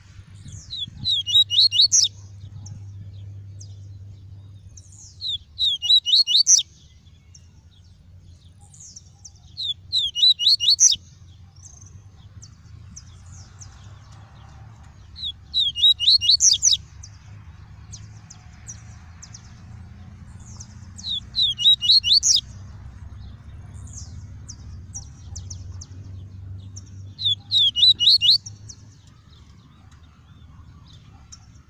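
Male papa-capim (yellow-bellied seedeater, Sporophila nigricollis) singing its tuí-tuí song: six short phrases of quick, high, sweeping notes, about five seconds apart, with faint chirps between them. A steady low hum runs underneath.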